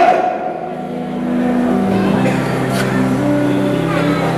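Sustained low keyboard chords, held steady and changing to a new chord about two seconds in.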